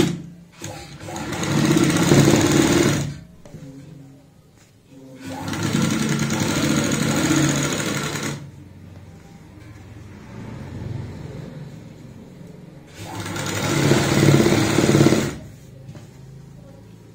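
Domestic sewing machine stitching a side seam, running in three bursts of about two to three seconds each, with short pauses between as the fabric is guided along.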